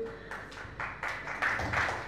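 Small audience applauding, scattered claps that grow louder after about a second.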